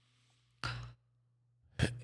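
A man's short breath drawn in through the mouth close to a microphone, once, between phrases.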